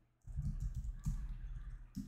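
Typing on a computer keyboard: a quick, uneven run of key clicks with dull thumps, starting about a quarter second in.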